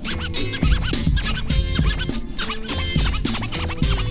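Hip-hop instrumental break with no vocals: a steady drum beat and bass line under DJ turntable scratching, many short up-and-down squiggles in pitch.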